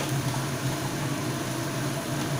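Steady low hum with an even hiss from the gas stove and the onions, tomatoes and spices cooking in oil in an aluminium kadai over a low flame.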